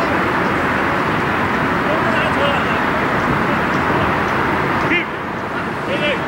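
Distant players' voices calling out across an outdoor soccer field over a steady wash of background traffic noise, with a short shout near the end.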